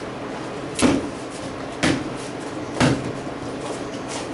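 Three sharp knocks, evenly spaced about a second apart, during wooden broadsword practice.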